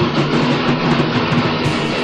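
Heavy metal band rehearsing an instrumental passage: distorted electric guitars with drums, playing steadily. It is recorded on a stereo cassette deck through two cheap microphones set in the middle of the rehearsal room, and no bass guitar can be made out.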